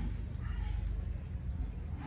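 Insects chirring steadily at a high pitch, over a low rumble.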